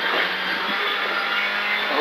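Rally car engine pulling hard under load in fourth gear, heard from inside the cabin, at a steady level.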